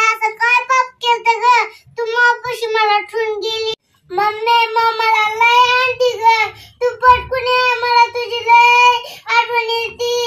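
A young girl's voice singing a slow melody alone, without accompaniment, in long held notes, with a brief pause about four seconds in.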